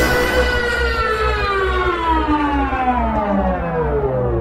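Acid rave track at a breakdown: the kick drum drops out and a long siren-like tone with a buzzy, many-layered timbre slowly slides down in pitch over a held low bass.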